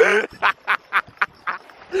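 A man laughing: one loud laugh, then a run of short bursts about four a second, and another loud laugh at the end.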